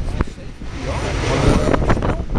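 Storm wind buffeting the microphone in gusts: a rumbling rush that dips briefly just after the start, then builds again through the second half.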